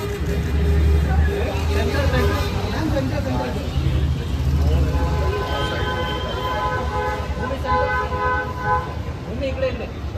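Indistinct voices of photographers calling out over a low rumble. From about five to nine seconds in, a long steady tone of several pitches at once sounds, briefly broken near the end.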